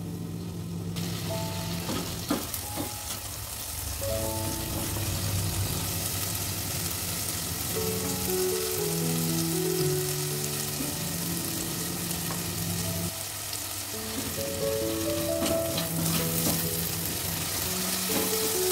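Ground spice paste of shallot, garlic, turmeric and ginger sizzling as it is sautéed in oil in a stainless steel pot and stirred with a silicone spatula; the sizzle grows stronger about a second in. Soft background music plays under it.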